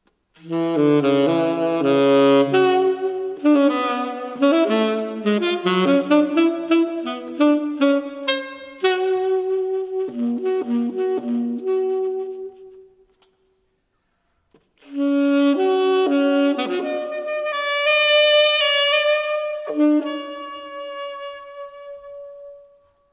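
Saxophone playing fast jazz runs. It stops for a moment just past the middle, then comes back in and ends on a long held note.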